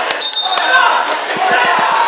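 A referee's whistle gives one short blast to start the bout, over crowd chatter in a large, echoing gym. A few dull thumps follow near the end.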